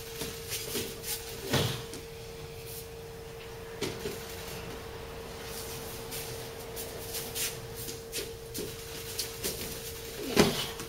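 An aikido partner being taken down onto a padded mat: a thump about a second and a half in as he goes down. Softer scattered knocks and cloth rustles from feet and cotton training uniforms on the mat follow, over a steady faint hum.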